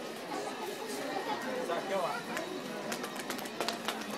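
Indistinct voices chattering, with a quick run of sharp clicks and taps near the end.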